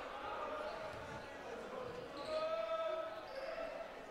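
Faint gymnasium ambience: low echoing court noise with distant voices, a faint held call around the middle.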